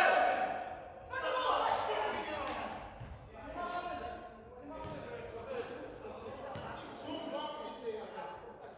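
A futsal ball being kicked and bouncing on a sports-hall floor, with a few short knocks, among players' shouts, all echoing in a large hall.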